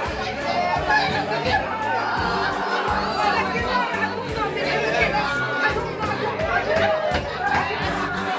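A crowd of mourners, many voices at once, talking and crying over one another in a packed room, with music underneath.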